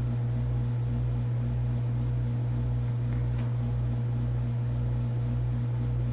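Steady electrical hum on a silent telephone hold line, with a slow throb about twice a second and no ringing or hold music.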